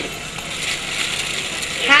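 A plastic carrier bag crinkling and rustling as it is handled and tucked under an arm.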